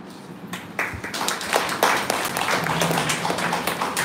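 A small group of people applauding, starting about a second in.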